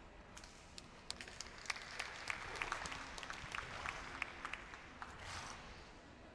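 Scattered applause from a small crowd: separate hand claps for about four seconds, thinning out near the end.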